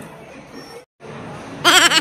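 Indoor public-space background hubbub, broken by a brief dropout a little under a second in. Near the end a person laughs loudly, a quick run of "ha, ha, ha" with a wobbling pitch.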